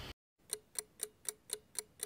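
Clock ticking sound effect: six even ticks, about four a second, starting about half a second in.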